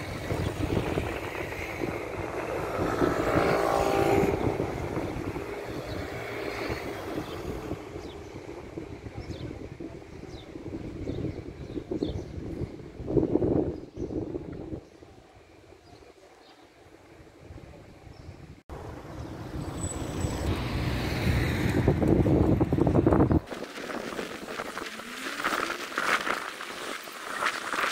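Street traffic: cars passing one after another, each swelling and fading away, with a quieter lull between them and a few abrupt breaks in the sound.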